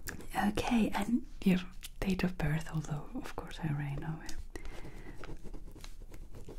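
A woman's soft, half-whispered voice murmuring and speaking quietly in short phrases.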